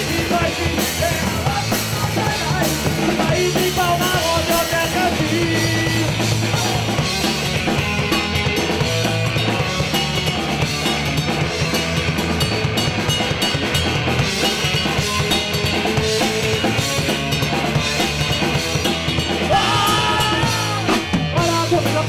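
Ska-punk band playing live: electric guitar, bass guitar and drum kit keeping a steady beat.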